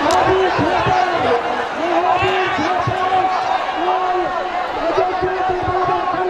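A man's voice calling out in long, drawn-out phrases over a large outdoor crowd's steady chatter, with one sharp knock right at the start.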